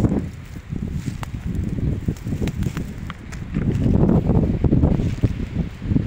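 Wind buffeting a phone's microphone outdoors: an uneven low rumble that dips early and swells again about halfway through, with a few faint clicks.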